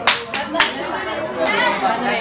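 Several people talking and chattering, with a couple of short sharp sounds near the start.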